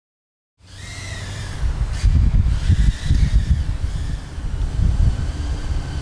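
Low, gusty rumble of wind noise on the microphone, starting about half a second in, with faint high tones above it.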